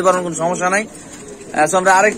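Domestic pigeons cooing in a cage: a wavering coo, a short pause about a second in, then another coo that falls in pitch at its end.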